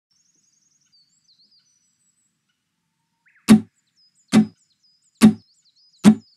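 Near silence with faint high chirps. Then, from about three and a half seconds in, three short, sharp strummed chords on an acoustic guitar, just under a second apart, each dying away quickly.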